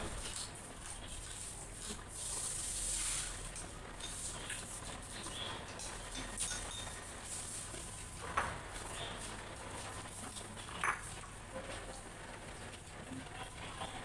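People eating from small bowls with chopsticks: scattered light clicks and taps of chopsticks on bowls, with a short hiss about two seconds in and two brief vocal sounds later on.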